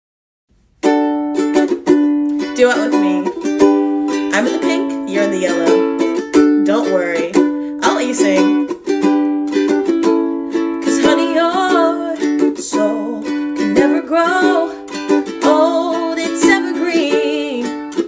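A ukulele strummed in steady chords, starting just under a second in after a moment of silence, with a woman singing over it.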